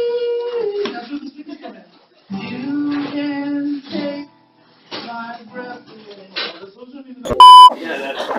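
People's voices, with long drawn-out wordless notes that slide in pitch and hold, followed by shorter, broken vocal sounds. A little before the end comes a short, very loud electronic beep, a single steady high tone.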